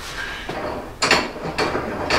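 A few sharp knocks and clatter of metal parts and tools being handled in a workshop, the loudest about a second in.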